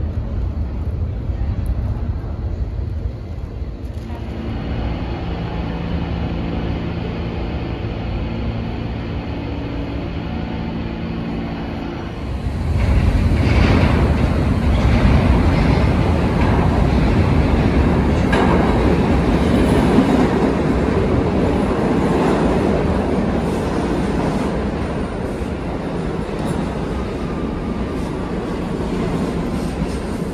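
A New York City subway train coming into an underground station. There is a low rumble with a steady hum at first. About twelve seconds in it turns to a louder rumble and rattle of steel wheels on the rails as the stainless-steel cars run along the platform.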